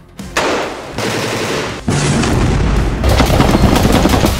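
Rapid automatic gunfire, a dense continuous rattle of shots that starts about a third of a second in and grows louder around two and three seconds in.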